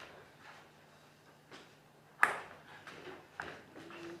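A single sharp impact with a brief ring about two seconds in, followed by a few faint taps.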